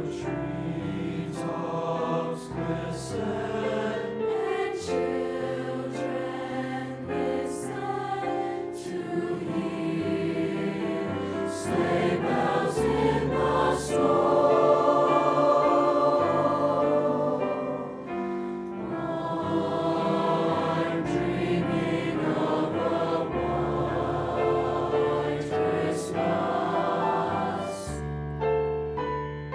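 A mixed high-school choir of male and female voices singing a choral piece, swelling to its loudest in the middle before easing back.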